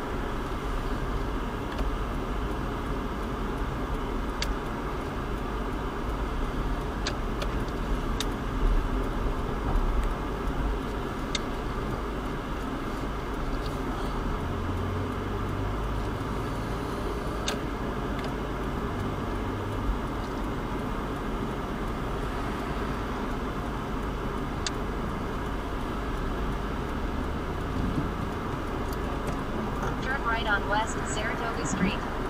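Steady low rumble of a car's engine and tyres heard from inside the cabin as it creeps along at walking pace, with a few faint, scattered clicks.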